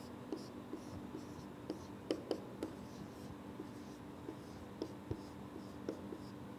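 Marker writing on a whiteboard: short squeaks and light taps of the tip as the strokes are made, the loudest taps a little after two seconds in, over a faint steady room hum.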